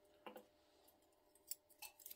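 Near silence, with a few faint clicks and taps as a plastic thermostat housing is handled.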